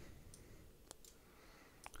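Near silence broken by a few faint computer mouse clicks: a sharp single click about a second in and a quick double click near the end.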